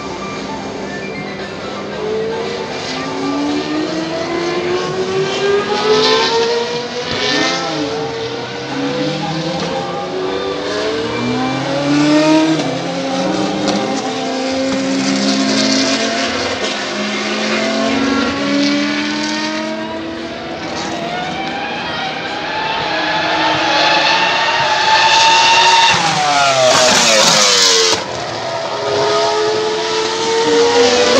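Open-wheel single-seater racing car engines revving hard as they lap the circuit, the pitch climbing again and again in steps through the gear changes. About 27 seconds in the pitch falls sharply.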